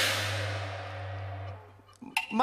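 A single cymbal crash from a Cantonese opera percussion section, struck once and left ringing until it fades away over about a second and a half, over a low steady hum that stops near the end.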